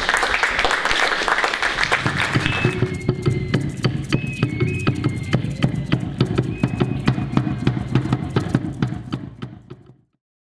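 Audience clapping, joined about two seconds in by music that carries on over the clapping and fades out near the end.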